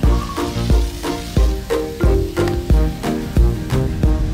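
Children's song backing music with a steady, bouncy beat and pitched melody notes, with a steady hiss laid over it.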